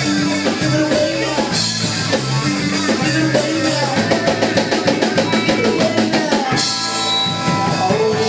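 Live band playing amplified electric guitar over a drum kit, with a fast even run of drum strokes in the middle and a cymbal-bright stretch with held notes near the end.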